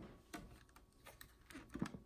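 Faint clicks and light knocks of a full plastic water filter pitcher being gripped by its handle and lifted off a countertop, a few scattered taps with the strongest near the end.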